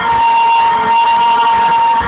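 Live arena concert sound recorded from within the crowd: one long high note held steady throughout, over a dense wash of music and crowd noise.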